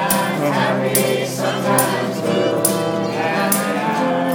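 Live folk band playing: acoustic guitars strummed, with a tambourine struck on the beat about once a second, and a group of voices singing together.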